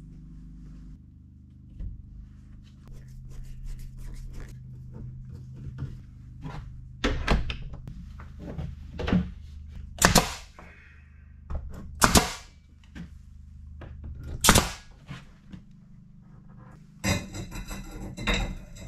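Knocks, bumps and clicks of an interior door being set into its framed opening, with several loud sharp knocks a couple of seconds apart in the second half.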